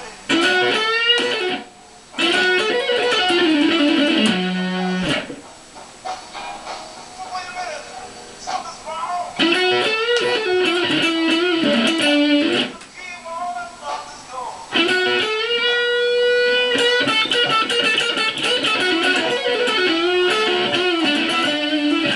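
Electric guitar, a Stratocaster-style solid-body, playing slow blues lead fills with string bends. It comes in loud phrases with quieter passages between, and a note is held out for a couple of seconds midway through the last phrase.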